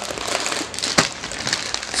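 Gallon Ziploc plastic bags crinkling as they are handled and shifted, with one sharp click about a second in.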